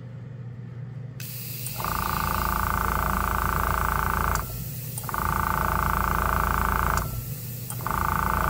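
Small airbrush compressor running while air hisses out of an open Gaahleri GHAD-68 airbrush, as the regulator is dialed down to 20 psi. The hiss starts about a second in, and a louder hum with a whine comes in three stretches of a couple of seconds each, with short breaks between.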